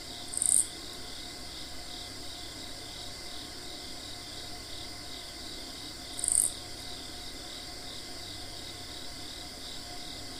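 Outdoor insect chorus of singing crickets: a steady high-pitched trill with an even pulse of about three beats a second. A short, shrill, very high call cuts in twice and is the loudest sound, about half a second in and again about six seconds in.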